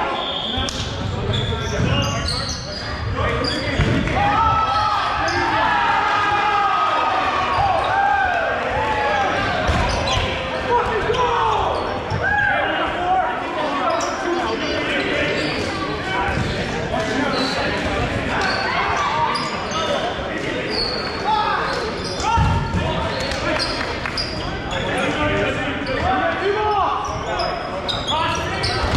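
Dodgeballs bouncing and thudding on a hardwood gym floor during play, with players' voices calling out across the court, all echoing in a large gym hall.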